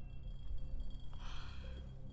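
A frightened woman's breathing through hands held over her mouth, with one sharp, shaky breath about a second in, over a low steady drone of film score.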